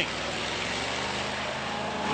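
School bus engines running under the steady noise of the derby arena, a low even rumble with no crash or impact.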